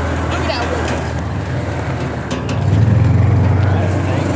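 A John Deere Gator utility vehicle's engine drones steadily as it drives along, growing louder a little over halfway in.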